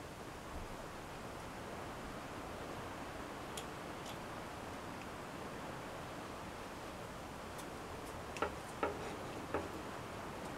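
Faint steady room hiss with a few small clicks and taps as the miniature horn-and-sinew crossbow and its bolt are handled, three sharper clicks coming close together near the end.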